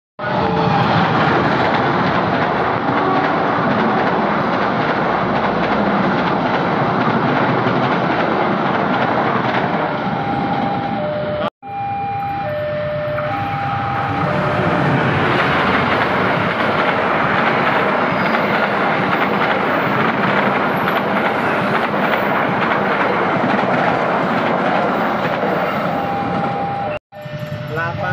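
Two diesel-hauled passenger trains pass close by one after the other, each a loud, steady rumble of locomotive engine and wheels on the rails. The locomotive horn sounds short two-note blasts around the change of trains in the middle and again near the end. The sound breaks off abruptly twice at the cuts between clips.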